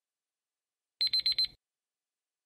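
Countdown timer's electronic alarm: four rapid, high beeps in about half a second, signalling that the time for the answer is up.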